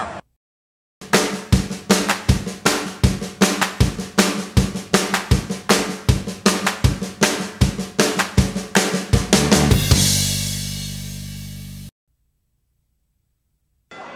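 Promo jingle music: a fast drum-kit beat of snare, bass drum and hi-hat starting about a second in, ending with a cymbal crash and a held low chord that rings for about two seconds and then cuts off suddenly.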